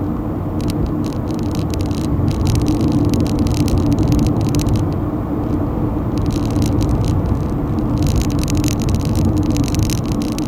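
A car driving on a two-lane back road, heard from inside the cabin: a steady hum of engine and tyre noise, with spells of fast light rattling from about two seconds in and again near the end.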